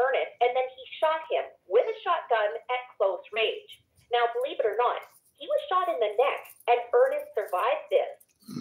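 A person talking continuously, the voice thin and narrow as over a telephone line.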